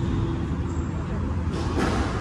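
Steady low rumble of background noise in an indoor squash court, with one short sharp knock near the end.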